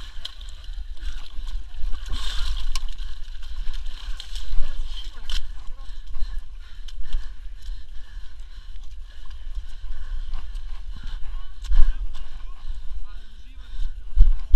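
Indistinct voices with muddy water sloshing, over a steady low rumble on the microphone.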